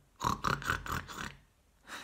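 A man imitating a pig, snorting through his upturned nose in a quick run of five or six short snorts lasting about a second.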